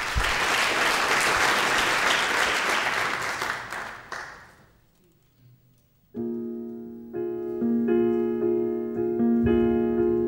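Audience applause that dies away over about five seconds, then after a brief hush a grand piano comes in with a run of jazz chords.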